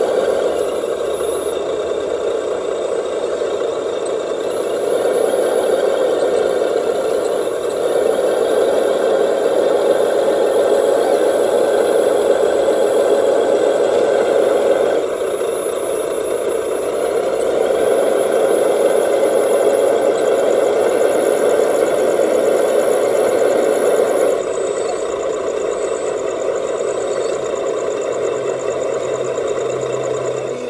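Steady diesel-engine idle played by an RC model's electronic sound unit through a small speaker, running on with only slight shifts in level.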